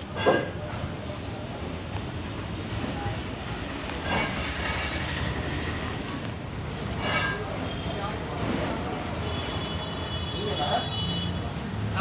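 Brief snatches of indistinct voices over a steady low background rumble.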